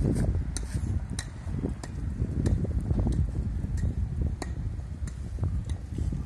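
Outdoor street ambience: a steady low rumble with scattered sharp taps, like a hand tool striking stone paving, roughly once a second.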